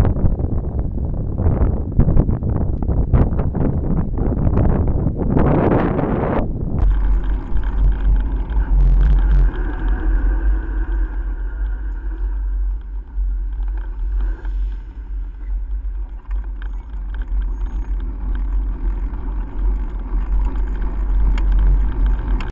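Riding noise picked up by a handlebar-mounted camera on a bicycle in traffic. For about the first seven seconds it is a rough, gusty rush. It then changes abruptly to a steady low rumble.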